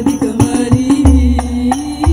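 Al-Banjari sholawat performance: women sing a long held, chant-like note in unison over rebana frame drums, with sharp slaps throughout and a deep bass drum stroke about a second in. The sung note rises slightly near the end.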